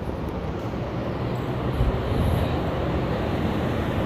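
Steady, low rushing noise of open-air street ambience, with no distinct engine, voice or impact standing out.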